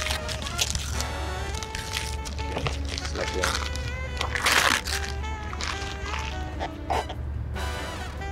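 Background music with a steady low beat and held notes, over the handling of a cardboard gift box and its wrapping; a short rustle of paper or card about halfway through is the loudest sound.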